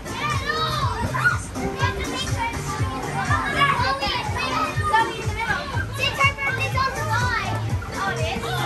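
A group of young children shouting, squealing and laughing together, many high voices overlapping, as they jump in an inflatable bounce house.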